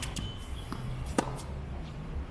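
Tennis ball struck by a racket: one sharp pop about a second in, after fainter ball-hit clicks at the start.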